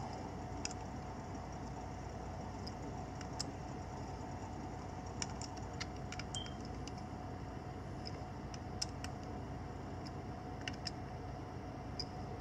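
Faint, scattered small clicks of a jeweler's Phillips screwdriver working the tiny screws of a camera lens bezel, over a steady low hum.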